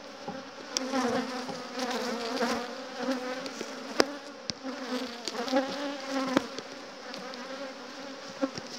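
Honeybees buzzing around an open hive, a steady wavering hum from many bees. A few sharp clicks and knocks, the loudest about four seconds in, come from a stuck wooden frame being pried loose from the box.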